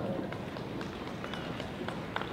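Steady background noise of a large hall with a seated audience, with a few faint, irregular taps.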